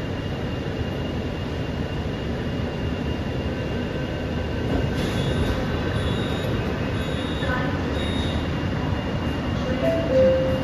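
Steady rumble and rolling noise inside a Mumbai Metro MRS-1 train car (BEML-built, with Hitachi SiC inverters and permanent-magnet motors), with faint high steady tones coming and going from about halfway through.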